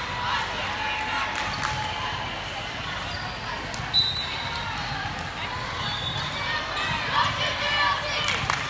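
Busy volleyball gym: balls bouncing on the hardwood court, many players' voices, and short high squeaks across the floor, with one sharp smack about four seconds in.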